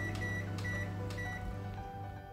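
A Black & Decker microwave oven running with a steady hum. Its keypad gives a few short beeps in the first second and a half as a button is pressed repeatedly to add heating time.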